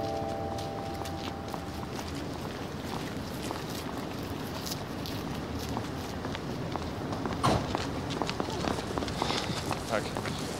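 Footsteps on paving over steady outdoor ambience, with a short loud sound about seven and a half seconds in.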